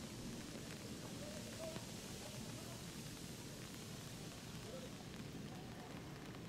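Steady hiss of rain falling on water and pavement, with faint distant voices now and then.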